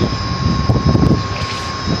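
Steady drone of rooftop mechanical equipment with a constant high whine running through it, overlaid by an uneven low rumble for the first second and a half.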